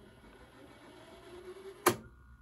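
VCR fast-forwarding a VHS tape, a faint steady whir of the spinning reels. Near the end comes one sharp mechanical click as the deck switches from fast-forward to rewind.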